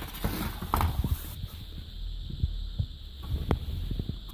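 Light knocks and clicks from handling the opened monitor's metal chassis and circuit boards, with a rustle in the first second and a half. Under them runs a steady low hum and a faint steady high tone.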